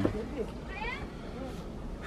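Quiet background with one short, high-pitched rising call a little under a second in.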